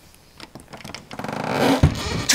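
A round metal doorknob turned with a few faint clicks, then a ratchety creak building steadily in loudness, with a low thud just before the end.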